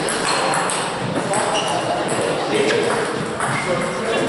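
Table tennis balls clicking off paddles and tables in rapid, irregular strokes from several rallies at once, over a steady background of voices in the hall.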